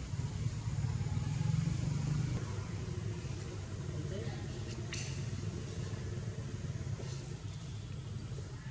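A steady low rumble with faint, indistinct voices, and a couple of short sharp clicks later on.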